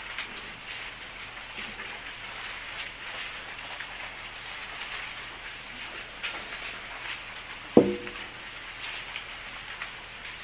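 Paper pages rustling and flicking as many people turn through their Bibles at once, a steady crackle full of small ticks. One short sharp thud stands out near the end.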